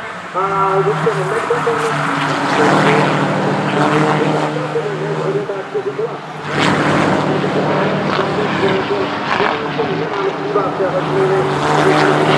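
Engines of several Škoda Octavia Cup race cars running hard as a pack passes, their notes rising and falling with throttle. Heavier engine and tyre noise comes in about six and a half seconds in.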